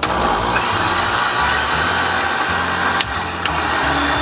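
Countertop blender motor starting suddenly and running at a steady speed, whirring as it blends a thick coconut-milk and rum mixture.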